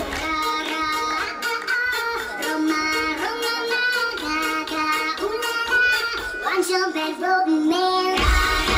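Recorded pop dance track played over a hall PA, in a section where the bass beat drops out and a high, childlike singing voice carries the tune over light backing.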